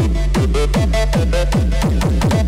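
Techno DJ set on a club sound system: a fast, steady kick drum whose every beat slides down in pitch into a deep bass, about two and a half beats a second, with a short high synth note repeating over it.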